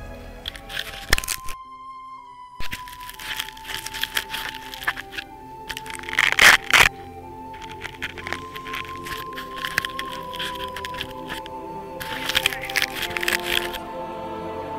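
Instrumental music with long held notes, broken by loud bursts of crackling and rustling noise from the camera being handled; the loudest burst comes about six and a half seconds in.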